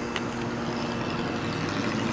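Steady background hum of road traffic along a town street, with a faint low drone and no distinct events.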